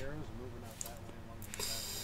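A man's quiet voice trailing off after a laugh, then a brief breathy hiss about one and a half seconds in.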